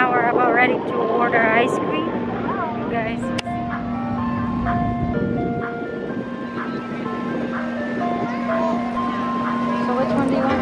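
An ice cream truck's jingle playing a simple tune of short, evenly held chiming notes over a steady low hum.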